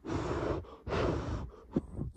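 Two long puffs of blown air, each lasting well over half a second with a short break between, blown over a freshly glued joint to help the glue set.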